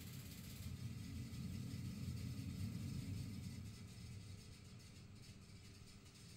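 Faint low rumble, with no tone or rhythm in it, that swells and then fades away about four seconds in.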